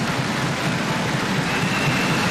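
Applause from a parliamentary chamber full of deputies: dense, steady clapping.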